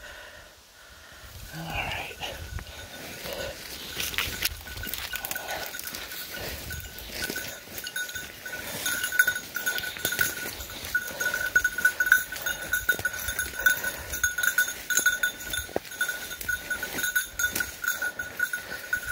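Bell on a bird dog's collar ringing steadily as the dog works through the brush, its jingle getting louder from about eight seconds in. The handler's footsteps rustle and crack through the undergrowth.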